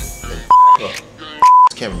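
Two loud, steady censor bleeps, each about a quarter second long, about half a second and a second and a half in, blanking out words in a man's speech.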